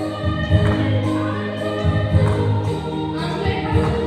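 Women's group choir singing a hymn together through microphones, several voices blending over a low sustained accompaniment.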